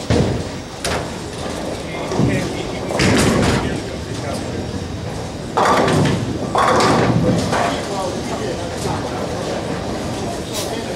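Ten-pin bowling alley: a bowling ball rolling down the lane and pins crashing, over the continuous rumble of balls and pinsetters on neighbouring lanes. Loud bursts of clatter come about three seconds in and again around six to seven seconds in.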